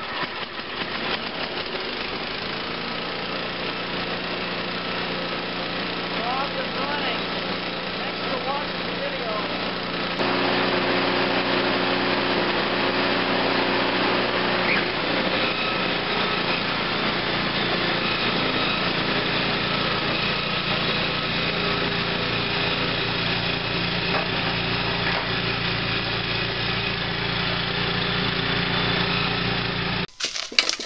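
Single-cylinder four-stroke 5 HP Tecumseh engine on an MTD snow blower, pull-started on its freshly repaired recoil cord, catching within about two seconds and then running steadily. About ten seconds in it gets louder and keeps running to the end.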